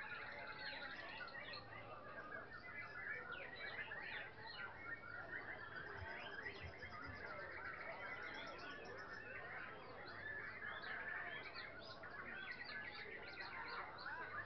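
Many caged songbirds singing at once, a dense, continuous mix of chirps, trills and whistles from dozens of birds hung in contest cages.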